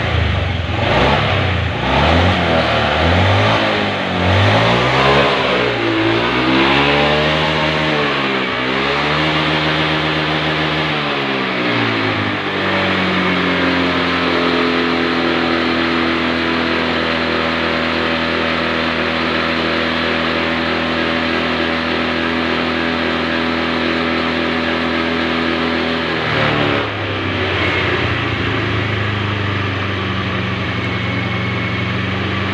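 Fuel-injected motorcycle engine running on injector cleaner fed from a pressurised canister. It revs up and down several times, then holds a steady fast speed, and drops back to a lower steady speed a few seconds before the end.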